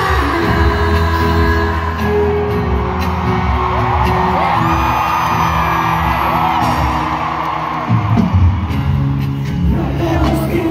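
Live pop band music at a stadium concert, recorded from within the audience, with a vast crowd singing along and screaming over it. A few sharp hits come near the end.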